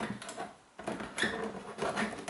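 Plastic control knob of an electric shower unit being turned by hand, giving a few light clicks, with hands handling the plastic casing.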